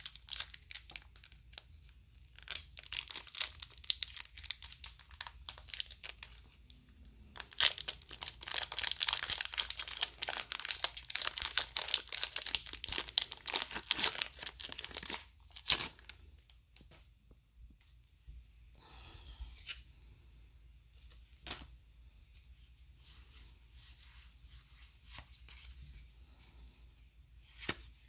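Foil Pokémon booster pack wrapper being torn open and crinkled, a dense crackling that runs for about the first half. After that come softer rustles and a few sharp clicks.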